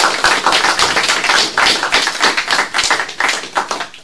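Audience applauding: many hands clapping together, fading out near the end.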